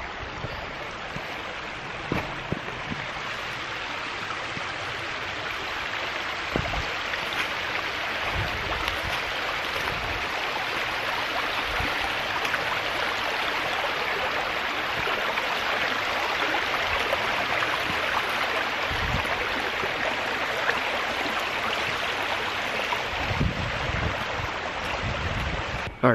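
Shallow creek running over rocks: a steady rush of water that slowly grows louder, with a few low thumps now and then.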